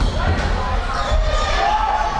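Basketball game play on an indoor court: the ball bouncing on the floor, with players' and crowd voices in a large hall.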